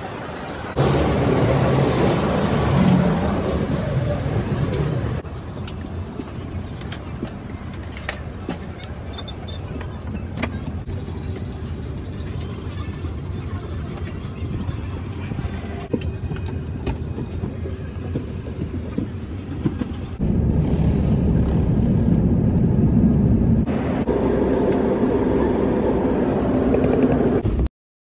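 A few seconds of busy airport-terminal noise, then the steady hum of an airliner cabin. About twenty seconds in, the hum turns into a louder low rumble.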